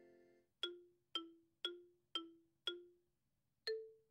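Intro music on a keyboard: a chord fades out, then a single note repeats five times about twice a second, and a higher note sounds once near the end.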